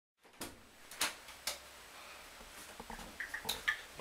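A few sharp clicks and knocks in a small room: three about half a second apart in the first second and a half, then a quieter stretch with two more near the end.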